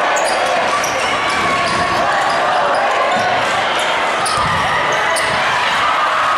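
Gymnasium crowd chatter and shouting during a basketball game, with a basketball bouncing on the hardwood court.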